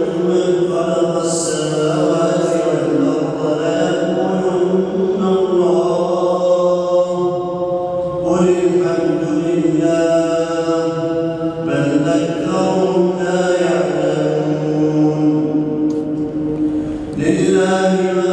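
A man's voice reciting the Quran in melodic chant (tajweed), drawing out long held notes that slide in pitch, with a few short pauses for breath.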